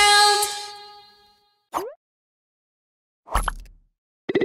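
A dance song's final chord fading away, then a short rising 'bloop' sound effect about two seconds in. Near the end, a brief thump with ringing tones as a jingle sound effect begins.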